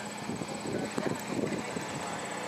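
Indistinct voices of people talking at a distance, over a steady outdoor background hum.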